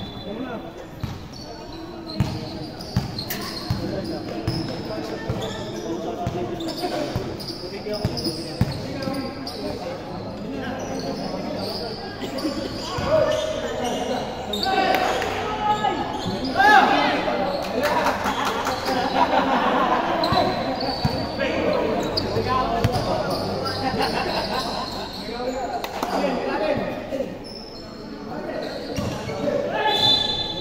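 A basketball being bounced on a hard court as players run the floor, with players' voices calling out, all echoing in a large gym hall.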